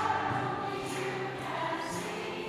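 A large women's choir singing sustained notes together.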